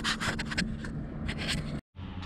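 Irregular rubbing and scraping noise on the camera microphone, over a low rumble, while riding a bicycle; it cuts off abruptly near the end.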